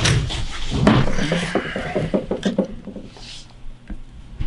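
A man's voice without clear words, over clicks and rustling from the camera being handled. It is loudest in the first two seconds and fades out by about three seconds in.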